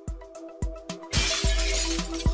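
Logo intro music: a held chord over deep, uneven bass hits. About a second in, a loud glass-shattering sound effect lasts most of a second.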